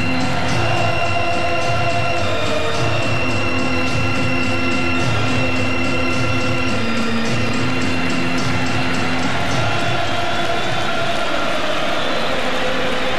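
Ballpark music played over the stadium's public-address system, held tones shifting in pitch over a pulsing low beat, with crowd noise underneath.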